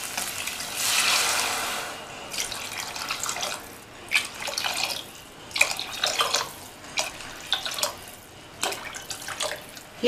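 Water poured into a pressure cooker of hot sautéed vegetables, splashing in several separate spurts.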